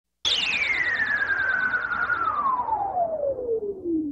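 Synthesizer tone sweeping slowly and steadily down in pitch, starting a moment in, with a fast-wobbling high warble on top that fades out about halfway, over a hissy noise bed.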